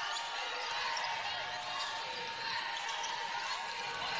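Basketball game sounds in an arena: a ball being dribbled on the hardwood court over a steady murmur of crowd voices.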